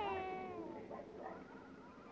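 A young child crying: the end of a long wailing cry that drops in pitch about half a second in, followed by fainter, broken whimpering cries that fade away.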